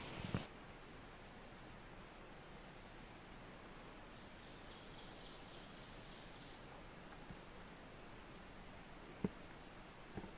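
Faint, quiet forest ambience with a steady low hiss. A faint, high, trilling bird call comes in from about four to six and a half seconds in, and there is one sharp click shortly before the end.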